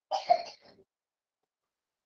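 A person briefly clearing their throat with a short cough, under a second long.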